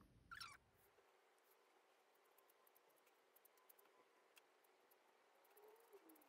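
Near silence, with faint scattered ticks and scratches of a watercolor brush dabbing on paper, after a brief soft sound right at the start.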